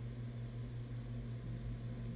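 Steady low hum with a faint even hiss: room tone in a pause of speech, with no other sound.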